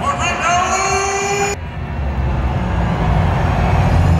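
A person's voice, cut off sharply about one and a half seconds in, then a deep, loud bass rumble swelling through the arena's sound system as the dark pre-game introduction music begins.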